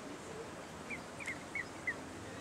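Young swans (cygnets) giving short, high peeping calls, about five in quick succession in the second half, over a steady background hiss.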